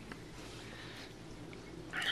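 Faint steady hiss with a low hum, typical of a small reef aquarium's pump and water circulation running.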